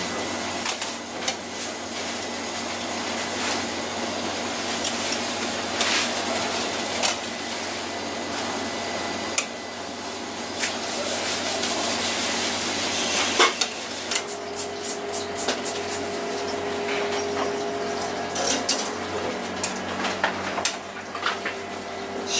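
Metal skewers clicking and tapping against a steel tray as they are pushed through a skipjack tuna fillet, over a steady rushing kitchen background noise; about two-thirds of the way through the background shifts and a steady low hum comes in.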